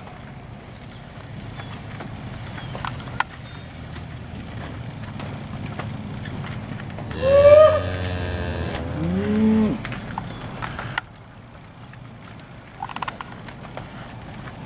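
Steers mooing: a loud call falling in pitch about seven seconds in, followed by a second, shorter call about two seconds later.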